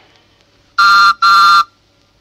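Postman's whistle tooting twice, two short steady toots a moment apart: the read-along record's signal to turn the page.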